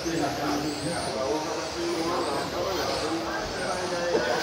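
Electric brushless-motor RC touring cars running around an indoor carpet track, their motors giving faint rising whines, under background voices in the echoing hall.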